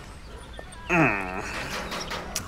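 A single short vocal sound about a second in, dipping in pitch and then holding for about half a second, over a quiet background.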